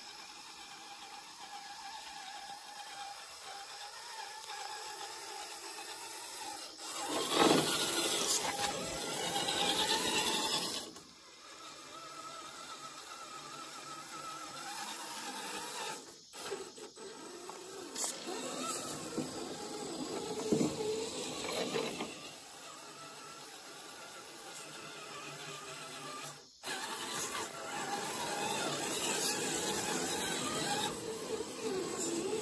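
Redcat Everest Gen7 RC crawler truck driving over creek rocks and wet ground. Its brushed electric motor and gear drivetrain whine and grind, rising and falling with the throttle, with a louder stretch about a third of the way in.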